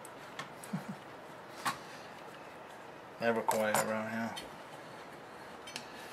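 A few light clicks and metallic taps from a car amplifier's circuit board being handled and fitted into its finned heatsink chassis. A short voiced sound comes about halfway through.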